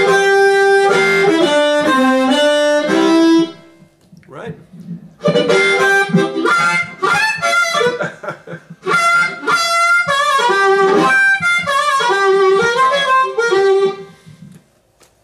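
A 10-hole diatonic blues harmonica played solo: a short phrase of held notes, a pause about four seconds in, then a longer, busier phrase of quick note runs.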